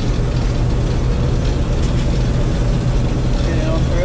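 Combine harvester running steadily while cutting wheat, heard from inside the cab as a constant low drone.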